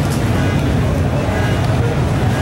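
Dodge Coronet R/T pro street car's V8 engine idling, a steady low rumble.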